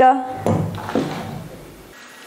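Stiff black trouser fabric being handled and smoothed flat on a table by hand: a cloth rustle that starts about half a second in and fades out.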